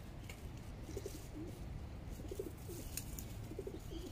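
A pigeon or dove cooing in three short, low phrases over a low steady rumble.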